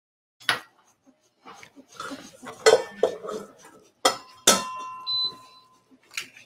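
Kitchen pans, bowls and utensils clinking and clattering on a counter, with a pan or bowl ringing on after a sharp knock about four and a half seconds in. A short high beep follows from the induction cooktop's touch control being pressed.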